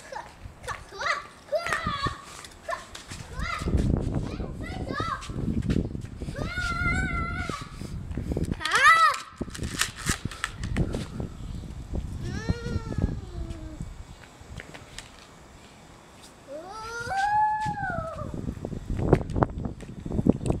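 Young children squealing and calling out in play, in short high voices that rise and fall, with a few long drawn-out shrieks. A low rumble on the microphone comes and goes.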